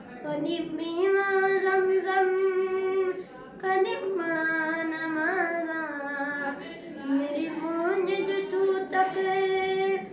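A boy singing a Punjabi song solo, with no accompaniment: long held notes with ornamented turns and glides. There are brief breaks for breath about three seconds in and again near seven seconds.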